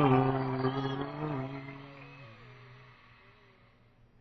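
A man's singing voice holding the song's final sung note, wavering slightly and fading out over about three seconds.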